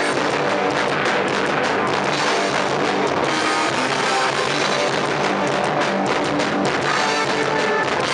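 Hardcore punk band playing live: loud distorted electric guitar over fast, steady drum-kit beats, with no break.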